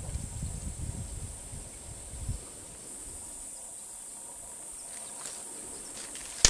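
Steady high-pitched drone of insects in dry bush. A low rumble sits under it for the first two seconds or so, then stops.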